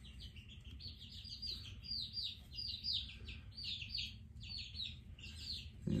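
Baby chicks peeping: a steady run of short, high, falling peeps, several a second.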